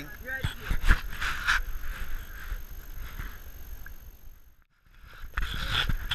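Hikers walking a rocky, brushy trail: scattered footsteps and rustling with brief faint voices in the first second or so. The sound drops out for a moment after about four and a half seconds, then resumes.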